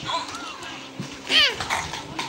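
A toddler's short, high-pitched squeal of excitement about 1.4 s in, rising and falling in pitch, over faint voices.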